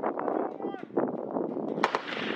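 M240 belt-fed 7.62 mm machine gun firing rapid bursts, with a brief break a little before the middle and a single sharp, loud crack near the end.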